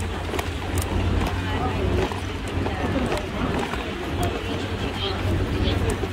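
Busy pedestrian street ambience: passers-by talking and footsteps, over a steady low rumble.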